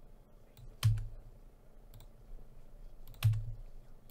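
Two sharp computer mouse clicks about two and a half seconds apart, each with a short low thud, and a few fainter clicks between them.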